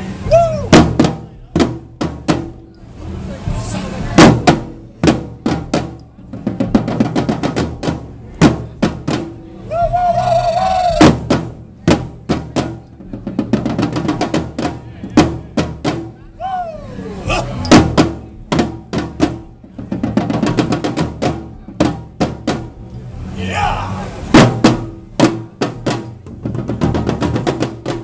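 Several snare drums played together: fast runs and rolls of sharp hits, broken by loud accented strikes.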